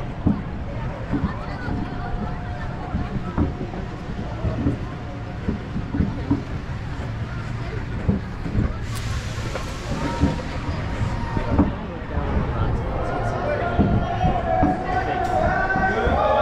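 Intamin launch coaster train rolling slowly along the track back to the station, a steady low rumble with irregular clunks from the wheels, and riders talking faintly. A hiss comes in about nine seconds in and lasts a couple of seconds.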